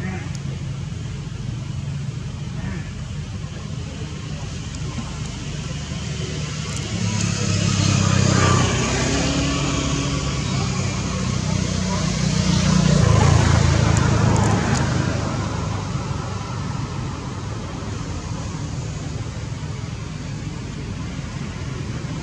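Steady low hum of a motor vehicle engine. It swells louder for several seconds in the middle, as if a vehicle passes close by, and then fades back to a steady hum.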